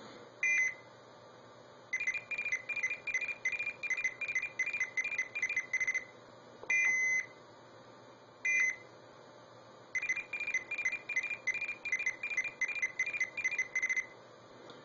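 Arduino blue box playing back a stored CCITT No. 4 (SS4) signalling sequence through a Western Electric 500 telephone earpiece. Short bursts of two high tones, 2040 and 2400 Hz, come between two runs of rapid beeps, about four a second and each lasting about four seconds. The beeps are the signals' coded bit patterns.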